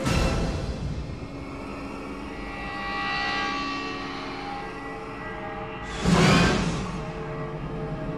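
Dark, suspenseful trailer score of sustained held tones, swelling a little about three seconds in. About six seconds in, a loud, brief rising whoosh-and-hit cuts through, then the held tones carry on.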